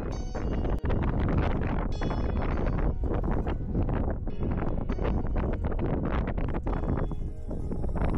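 Wind buffeting the microphone with a steady low rumble, and irregular crunching steps on a gravel path.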